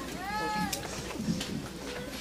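A single short, high-pitched cry of about half a second, rising then falling like a meow, over low murmuring voices, followed by a couple of faint knocks.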